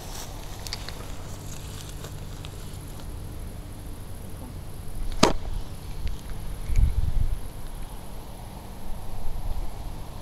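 Spinning rod and reel in use during a cast: a sharp click about five seconds in, then a louder low rumbling thump, over a steady low hum.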